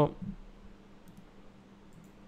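A few faint clicks from computer controls, on a quiet background; a man's voice finishes a word at the very start.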